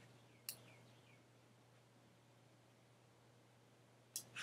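Near silence: room tone with a faint steady low hum and one short faint click about half a second in.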